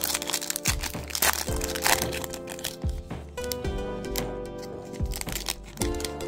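A 2022 Panini Prizm football card pack's foil wrapper being torn open and crinkled, in irregular sharp crackles that are loudest about a second and two seconds in, over steady background music.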